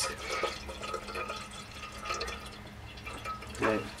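Water being poured from an insulated bottle into a stainless steel kettle, a steady, fairly quiet pour as the kettle fills.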